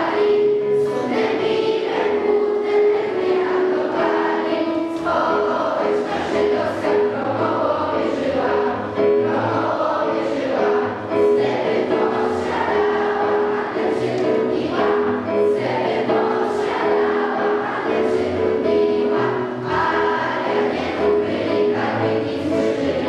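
A large group of children singing a song together, carrying one melody in long held notes.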